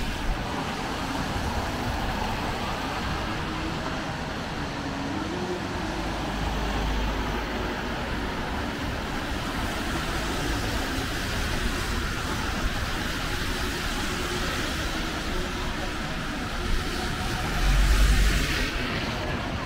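Street traffic on a rain-wet road: cars passing with a steady tyre hiss. A heavier low rumble from a passing vehicle swells around six to eight seconds in and again near the end.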